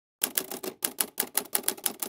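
Typing sound effect: a quick run of sharp key clicks, about six or seven a second, starting about a quarter second in.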